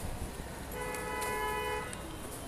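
A vehicle horn sounding once, a steady pitched honk lasting about a second, starting a little under a second in, over a low background rumble.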